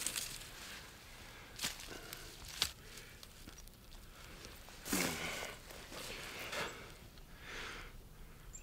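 Bare hands digging in dry soil and pulling a lily bulb with its roots out of the ground: soil crumbling, roots tearing and rustling, with scattered small snaps. The loudest rustle comes about five seconds in, with a shorter one near the end.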